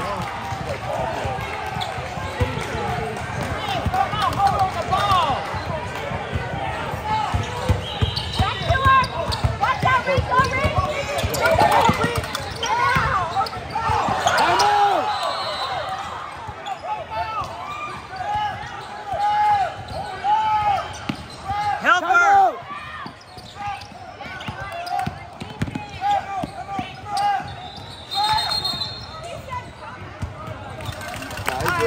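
Basketball bouncing on a hardwood gym court during game play, with players and spectators calling out.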